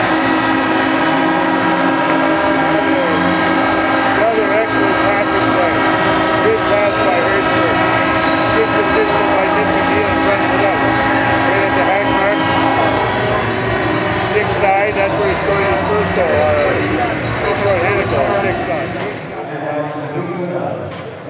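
Arena goal horn sounding a long, steady multi-tone blast over a cheering crowd, marking a home-team goal; the horn's lowest tones stop about thirteen seconds in while the crowd noise carries on.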